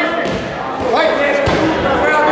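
Several voices shouting over each other in a large sports hall, from ringside coaches and spectators during a kickboxing bout, with a single thud about three quarters of the way through.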